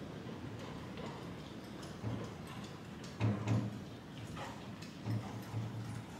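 Faint, muffled hoofbeats of a horse moving over a sand arena surface: a few soft thuds, some single and some in pairs, against a low hiss.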